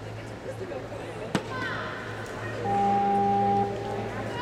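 Sports-hall ambience of voices with a steady hum. A single sharp knock comes about a third of the way in, and near the end a loud, steady electronic buzzer tone sounds for about a second.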